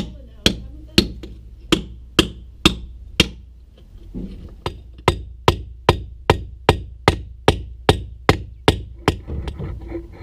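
Hammer and chisel knocking the old brick-on-edge coping and weak mortar off a brick garden wall: a run of sharp blows about two a second, a short pause about three seconds in, then a longer, steady run of blows.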